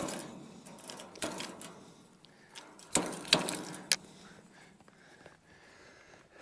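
Wire fence netting being handled, giving a few sharp metallic clicks and rattles: one about a second in and a cluster about three to four seconds in.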